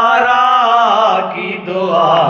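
Male voices reciting a noha, an Urdu Shia lament: a long held, wavering sung note, then a new phrase begins near the end.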